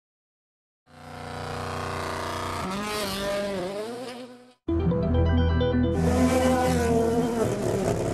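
After a second of silence, a rally car's engine note swells up and wavers in pitch. About four and a half seconds in, loud music with a strong beat starts, mixed with rally car engine sound.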